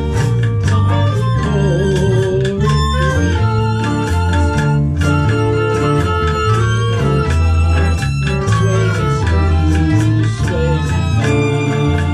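Live band playing an instrumental passage of a Latin dance tune, with no vocals: acoustic guitar to the fore over a stepping bass line and drums, with hand percussion in the rhythm.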